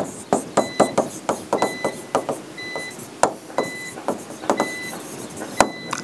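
Stylus tapping and scraping on the glass of an interactive touchscreen display while a word is handwritten, a quick run of clicks and strokes. A short high beep sounds about once a second.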